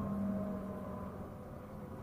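Shuttle coach's engine and road noise heard from inside the passenger cabin while driving: a steady low hum with a few held tones, a little louder in the first half second.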